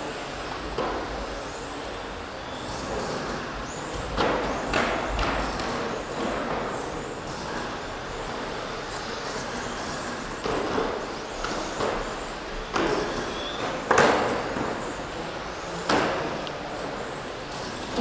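Stock-class electric 1/10 touring cars racing on a carpet track, their motors giving a high whine that rises and falls as they pass. Several sharp knocks come through, the loudest about 14 seconds in.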